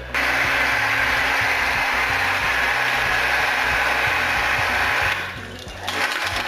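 Steady, loud hiss of air or water rushing through a valve on a hydrostatic cylinder-test rig. It starts suddenly and dies away about five seconds in, with background music underneath.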